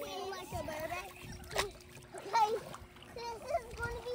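Children's voices calling and chattering over water splashing in a swimming pool, with one sharp knock about a second and a half in and a faint steady hum underneath.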